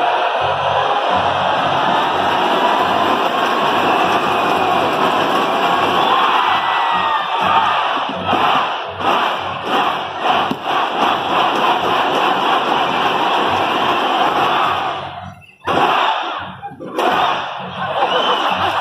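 Large crowd shouting and cheering in a steady loud roar, with music underneath. The noise drops away sharply twice, briefly, near the end.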